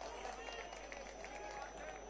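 A pause in a speech over a microphone: faint, indistinct background voices of a gathered crowd, with a thin steady high-pitched whine.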